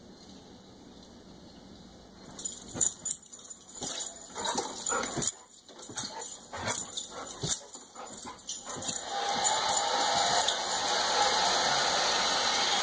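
A dog jumping up at a television: a run of sharp clicks and knocks for about six seconds, then crowd applause from the tennis broadcast builds and holds near the end.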